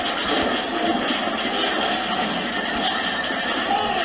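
Battle sound effect: a dense din of fighting, with sharp clashing hits about once a second.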